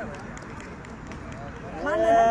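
Voices of players and onlookers talking faintly in the background on an outdoor cricket ground; just before the end a man starts a loud, long drawn-out shout.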